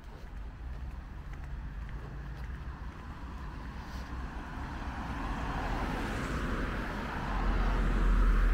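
A car approaching along the adjacent street, its road noise growing steadily louder over the second half, with a low rumble growing strong near the end.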